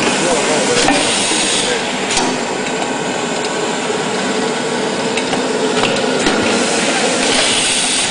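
Tauler Printlam CTIS 75 automatic roll laminator running as sheets feed through: a steady mechanical noise with a few sharp clicks and short spells of louder hiss.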